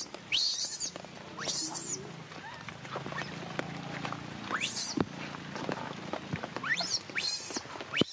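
Baby macaque screaming in distress: a series of short, high-pitched shrieks, each rising in pitch, coming in clusters near the start and again in the second half.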